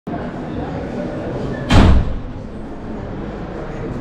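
A single loud thud about two seconds in, over steady room noise.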